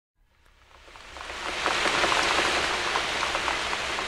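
Rain falling steadily with scattered drops pattering, fading in from silence over the first second and a half.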